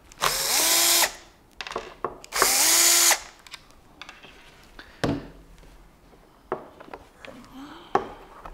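Small power driver run twice in short bursts, each spinning up in pitch and then holding steady, backing out the screws that hold a combat robot's wheel guard. A few sharp knocks and handling sounds follow as the parts are set down on the wooden bench.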